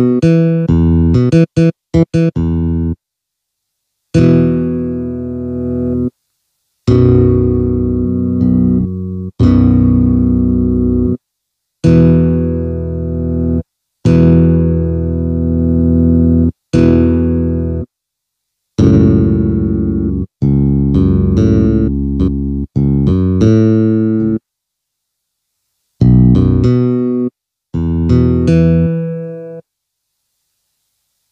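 Electronic arranger keyboard played in the low register: a bass line in short phrases of held notes, about a dozen of them, each cut off abruptly into silence.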